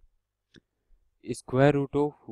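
Near silence with one faint click about half a second in, then a man's voice starts speaking near the end.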